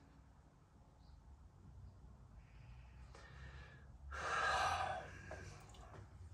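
A man nosing a glass of beer: faint breaths drawn in through the nose, then a louder breathy exhale, like a sigh, about four seconds in.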